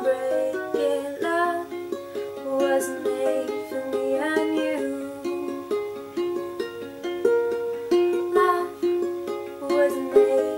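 Ukulele playing an instrumental passage of chords, changing about every half second to a second, with a small-room sound.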